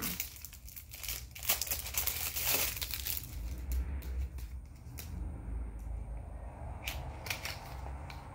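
Packaging crinkling and rustling as a small makeup box is handled and opened, densest in the first three seconds, then scattered taps and clicks.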